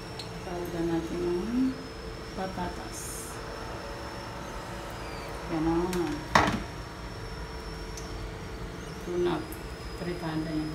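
A person's voice in a few short, faint snatches over a steady low hum, with one sharp click about six seconds in.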